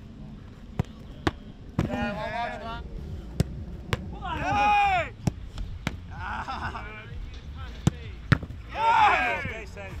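Several sharp thuds of a football being kicked and caught during goalkeeper drills, with loud drawn-out shouts between them, the loudest in the middle and near the end.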